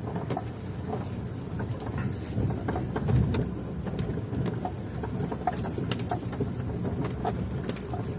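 Car cabin noise while driving slowly over a rough, unpaved sandy street: a steady low engine and tyre rumble with frequent light clicks and rattles from the bumpy surface.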